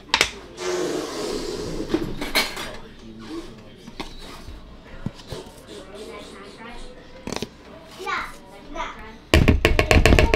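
A knock, then quiet scraping as cornstarch is scooped from its plastic tub into a large mixing bowl. Near the end comes a loud, fast rattle of knocks as the measuring cup is shaken and tapped over the bowl to empty the powder.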